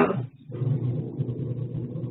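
A speaker's last word trails off, then a steady low hum with a faint hiss of background noise carries on without change.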